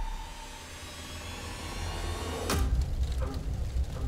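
Movie-trailer sound design: a low, steady rumble with a single sharp hit about two and a half seconds in.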